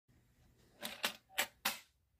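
Coins rattling inside a tin money box as it is shaken: four short, light rattles starting about a second in.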